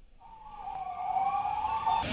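A siren wailing, fading in from silence and growing steadily louder as its pitch drifts slowly upward.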